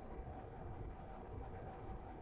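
Quiet room tone in a pause between speech: faint, steady background noise with a faint, thin steady hum.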